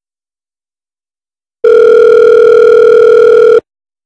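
Telephone ringback tone on the line: a single steady two-second ring of an outgoing call that has not yet been answered, starting about one and a half seconds in after silence and cutting off cleanly.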